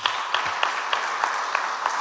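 Audience applauding: many hands clapping together, starting suddenly and keeping up a steady level.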